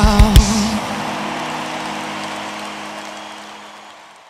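A live band ending a song: two heavy drum hits just after the start, then the last chord and cymbals ringing and slowly fading away.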